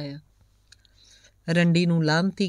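A woman narrating a story in Punjabi. She breaks off a moment after the start, leaving a pause of about a second with a faint click in it, then carries on reading about a second and a half in.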